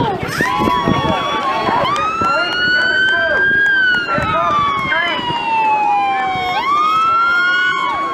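Police siren wailing in one long slow sweep: it climbs for the first few seconds, sinks gradually, then climbs again near the end, with people shouting over it.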